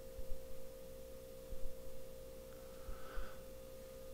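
Faint, steady single-pitched electrical whine in the recording's background, with only low background noise around it.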